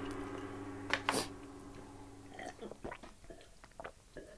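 A drinking glass lifted from the table and sipped from, with quiet mouth sounds; two short sharp sounds about a second in.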